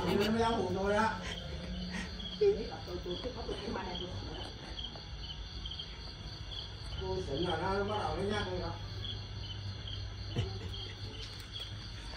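Crickets chirping steadily in an even, pulsing chorus over a low steady hum. A man's voice speaks briefly at the start and again about seven seconds in, and there is a single sharp knock at about two and a half seconds.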